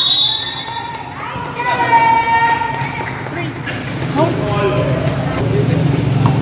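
Voices and chatter of players and spectators around a basketball court, with a few knocks of a basketball bouncing on the court. A referee's whistle tails off right at the start.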